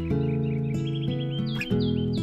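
Acoustic guitar background music with a bird chirping over it: a quick run of short chirps, then three higher, falling chirps near the end.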